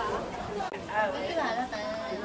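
People talking: several voices in close conversation, overlapping.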